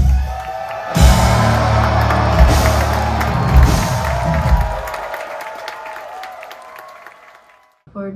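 Live rock band (electric guitars, bass and drums) playing loud, heavy music at a club concert, heard from within the crowd; the music fades out over the last three seconds.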